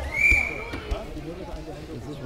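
A referee's whistle gives one short blast of about half a second, just after the start. Voices of spectators and coaches carry on underneath.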